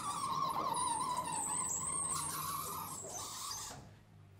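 Vertically sliding chalkboard panels being pushed up and down past each other, their runners giving a steady squeal that stops shortly before the end.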